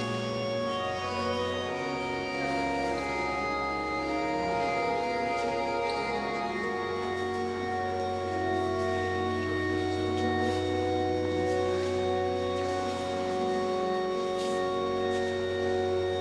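Church organ playing slow, sustained chords over long-held bass notes, the bass changing twice in the first seven seconds.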